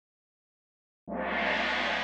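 Silence for about a second, then background music begins suddenly with a sustained, held chord.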